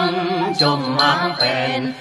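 Tày Then folk music in an instrumental passage: a melody with held and gliding notes over a steady tinkling beat of shaken jingle bells, a few strikes a second.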